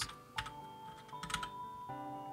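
Computer keyboard keystrokes: a few quick taps about half a second in and another cluster just past a second, over soft background music with held chords.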